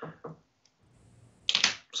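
A pause in a man's talk: near silence for about a second after a faint tick, then a short hiss and his voice starting up again near the end.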